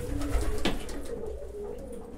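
Domestic pigeons cooing softly in a loft, low and steady, with a single sharp click about two-thirds of a second in.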